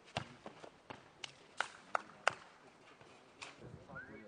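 A nohejbal (football tennis) ball being kicked and bouncing on a clay court during a rally: about eight sharp thuds, the three loudest coming close together around two seconds in.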